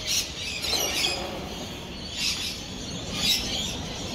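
Birds calling at dawn: about four short, harsh, high-pitched calls, roughly a second apart.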